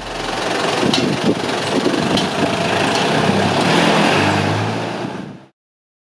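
Engine of a small red dump truck, loaded with rubbish, running as it pulls away along the street. The sound cuts off suddenly about five and a half seconds in.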